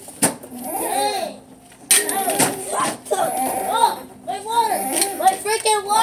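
Children's voices calling and shouting in play, some calls held long, with no clear words. Two sharp knocks break in, one just after the start and one about two seconds in.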